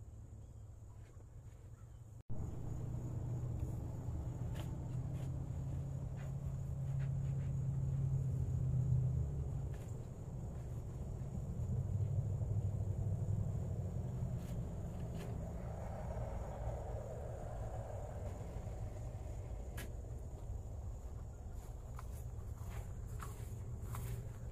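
Metal shovel scraping and chopping into dirt and rock, a few sharp strikes, over a low rumble that starts suddenly about two seconds in and swells and fades twice.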